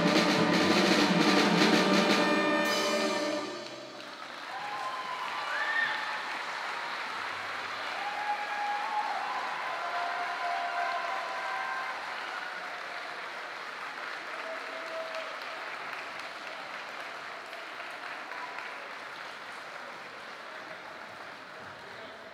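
A school concert band's brass, woodwinds and percussion end a piece on a loud held chord with drum and cymbal hits, cutting off about three and a half seconds in. The audience then applauds, the clapping slowly dying away.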